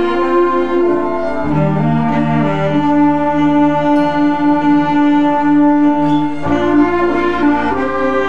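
A school ensemble of bowed strings, woodwind, brass, guitars, piano and drums plays a slow piece in sustained chords, assembled as a virtual orchestra from separate home recordings. The cello and bowed strings come through clearly, and a lower line enters about a second and a half in and drops out about five seconds later.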